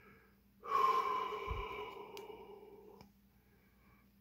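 A man's long breathy sigh, starting about half a second in and fading away over about two seconds.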